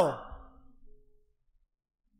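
A man's drawn-out, sigh-like vocal exclamation falling in pitch, trailing off within the first half second and fading to near silence by about a second in.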